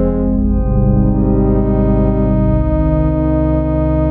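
Instrumental music: sustained synthesizer chords over a low bass, with the chord changing about a second in and again near three seconds.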